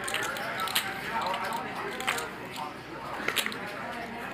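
Low background murmur of voices around a poker table, broken by a few short sharp clicks of clay poker chips being handled.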